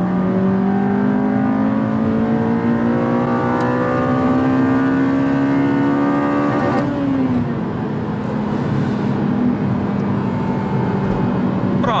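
Honda Civic Si's four-cylinder i-VTEC engine pulling hard in gear with VTEC engaged, heard from inside the cabin: the revs climb steadily for about seven seconds. Then the revs drop sharply and hold steady at a lower pitch.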